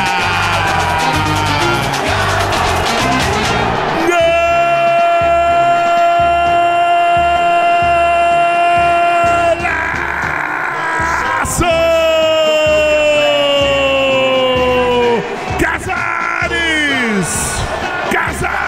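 Radio football commentator's drawn-out goal shout: one long cry held on a single pitch for about five seconds, then a second long cry sliding down in pitch, and shorter falling shouts near the end. Under it runs a music bed with a steady low beat.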